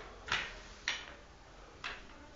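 Three short brushing swishes of a broom on a hard floor, the second about half a second after the first and the third nearly a second later.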